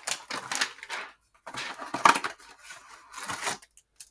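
Clear plastic wrapper around a stack of trading cards crinkling as it is worked open by hand: a string of irregular crackles with two short pauses.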